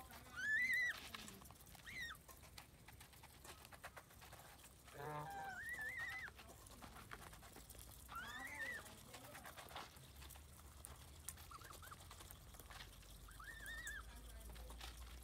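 Domestic geese calling while they feed: a series of short, arched calls, the loudest about half a second in and others spaced every few seconds. Faint clicking of bills in the food bowls runs between the calls.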